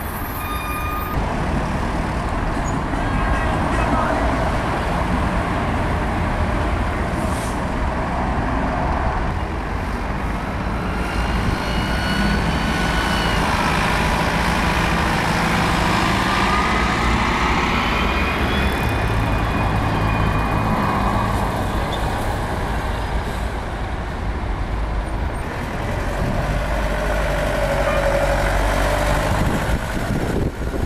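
Diesel buses running and pulling away in street traffic, a steady engine rumble over road noise, with a faint whine rising and falling through the middle.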